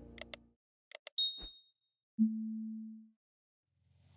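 Sound effects of a subscribe-button animation. There are two pairs of quick mouse-click sounds, then a short high ding that dies away. About a second later a lower tone holds for nearly a second. The tail of the preceding music fades out in the first half second.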